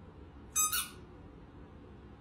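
Squeaky dog toy ball squeezed: one short, high-pitched squeak in two quick pulses, about half a second in.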